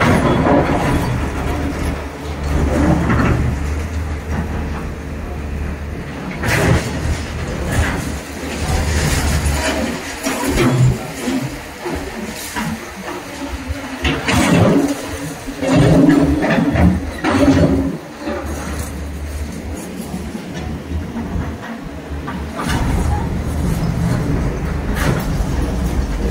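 A heavy excavator's diesel engine runs with a steady low rumble, broken in the middle by irregular knocks and clatter of demolition work.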